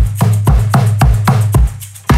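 A Toca KickBoxx suitcase drum kit played in a busy groove: the suitcase bass drum thumps about twice a second under quick, dry hits on the small snare and tom.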